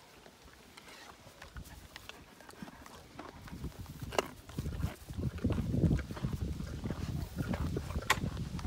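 A large equine animal breathing close to the microphone as it noses up to it. The sound is an uneven low rumble that grows louder about halfway through.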